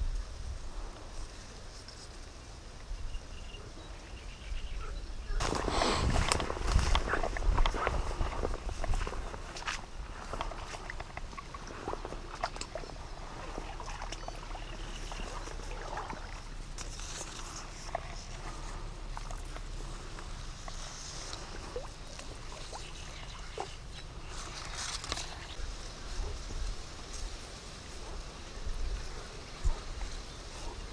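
Rustling and handling noise from reeds and a fishing rod being moved through a reed bed, loudest for a few seconds near the start, then quieter scattered rustles and small clicks over a faint outdoor background.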